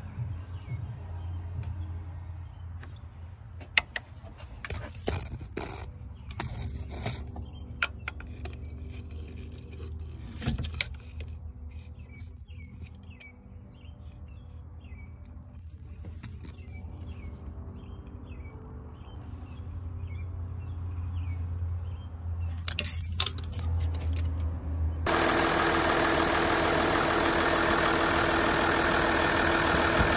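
Scattered clicks and knocks of tool and mirror handling over a low steady hum, then, near the end, a Mercedes OM642 V6 turbodiesel starts to be heard running steadily at idle, loud and even, on its freshly replaced timing chain and tensioner.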